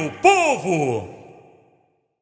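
The end of a samba-enredo recording: two short falling pitched slides over a held low note, then the music stops about a second in and dies away to silence.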